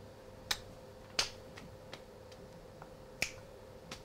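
A few sharp, isolated clicks over a faint steady hum. The three loudest fall about half a second in, just after a second and just after three seconds, with softer ticks in between.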